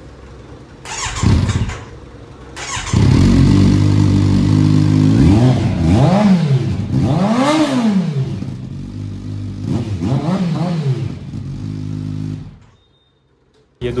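Kawasaki Z900 inline-four engine running through an SC Project replica slip-on silencer held by hand on the link pipe: after a short burst about a second in, it starts, idles, and is blipped up and back down four times, the biggest rev near the middle, then is switched off suddenly shortly before the end.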